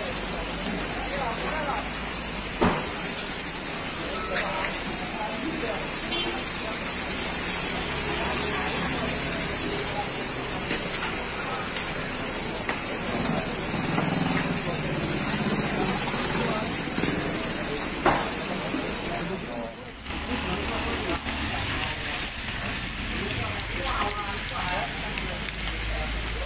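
Market kiosks burning in a large fire: a steady rushing crackle with a few sharp cracks, under people's voices calling and talking.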